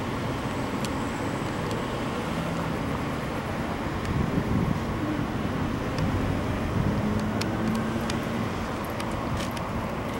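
Steady road traffic noise, with a low vehicle engine drone that swells around the middle.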